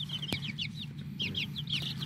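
Baby chicks peeping in a brooder: many short, high peeps that slide down in pitch, over a low steady hum. A single sharp click comes about a third of a second in.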